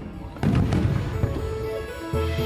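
A firework bursting about half a second in: a sudden loud boom with a crackling rumble that fades, with music of held notes underneath.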